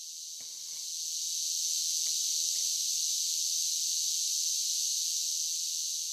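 A steady high-pitched hiss or insect-like drone that swells about a second in and then holds level.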